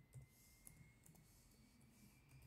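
Faint clicks of keys on an HP Pavilion 15 laptop keyboard as a BIOS password is typed, about five keystrokes spread over two seconds. A faint thin high tone rises slowly in the background.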